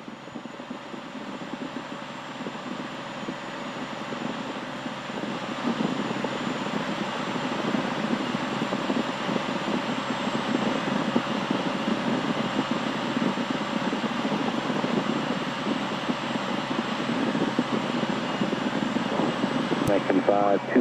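Cirrus SR20's six-cylinder piston engine and propeller droning steadily in the cabin during the climb. The sound fades in over the first few seconds and then holds level.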